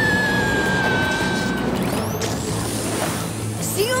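Dramatic action-cartoon soundtrack music layered with sound effects. A long high tone falls slowly over the first two seconds, and a rising sweep comes in about two seconds in.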